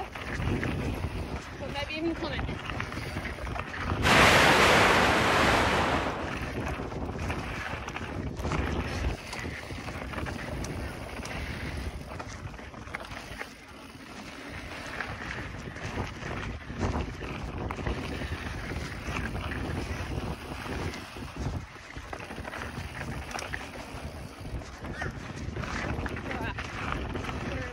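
Wind buffeting the microphone and knobby tyres rolling over a dirt trail as a Kona Process full-suspension mountain bike is ridden fast downhill. About four seconds in, a much louder rush of noise lasts about two seconds.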